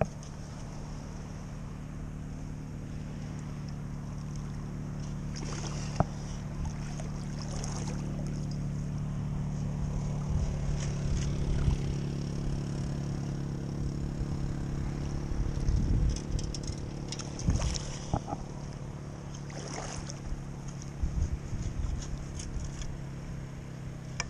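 A steady low motor drone, a little louder in the middle, with a few short splashes and scrapes as a long-handled sand scoop digs in shallow water.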